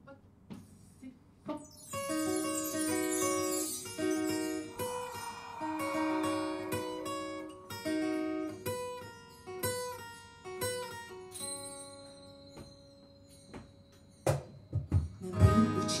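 Acoustic guitar played live: after a quiet start, picked notes ring out in a steady, even pattern, thin out to a few sustained notes, then fuller, louder strummed playing comes in near the end.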